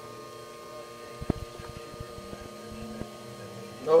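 Steady electrical hum made of several steady tones. A short rattle of clicks comes about a second in and a single tick near three seconds.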